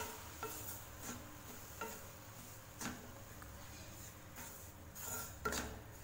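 Spatula scraping and tapping against a non-stick kadai while stirring dry moong dal powder with jaggery, in soft, irregular strokes about once a second.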